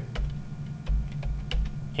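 Computer keyboard keys being pressed while editing code: a string of separate short clicks with a few dull low thumps.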